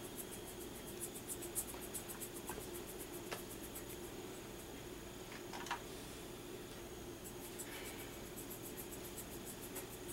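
Faint scratching and dabbing of a flat paintbrush worked over the hard shell of a small egg gourd, with a few soft clicks, over a steady faint hum.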